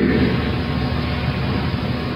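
Steady rushing noise with a low hum underneath, without any clicks or changes: the background noise of the sermon recording, heard in a pause between phrases.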